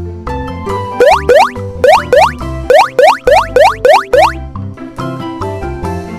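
Upbeat children's-style background music with a run of about ten quick rising cartoon "boing" swoops, mostly in pairs, from about one to four seconds in.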